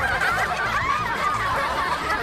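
A group of cartoon characters laughing together, many voices overlapping in a dense, continuous mass of laughter.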